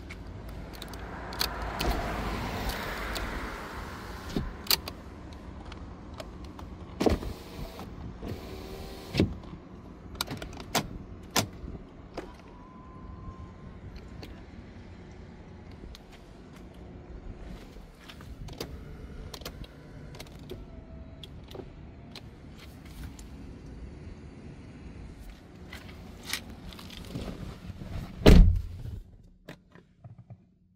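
A 2014 Hyundai Sonata's power-window motor running for two or three seconds as the door switch is pressed. It is followed by scattered sharp clicks and knocks, over a faint steady low hum.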